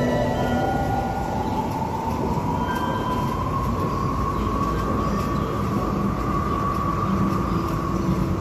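A loud mechanical rumble with a whine that rises in pitch over the first three seconds, then holds steady.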